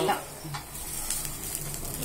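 Adai batter frying in oil on a hot dosa tawa: a steady sizzle.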